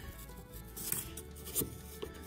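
Quiet background music, with a few short scrapes from a utility knife blade cutting into the flotation foam under the boat's fibreglass deck.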